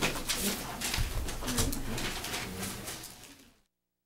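Meeting-room bustle as a meeting breaks up: rustling papers, small knocks and shuffling, with low murmuring voices. It fades away to silence about three and a half seconds in.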